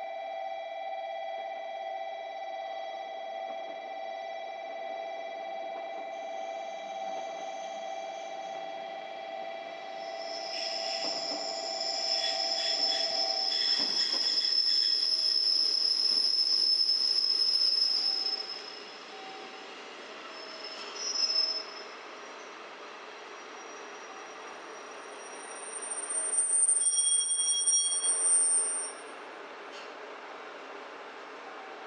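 Steady electronic tones sound for the first dozen seconds while a single-car train approaches. The train's wheels and brakes squeal on high pitches as it runs in and slows toward the platform, loudest in the middle and again near the end.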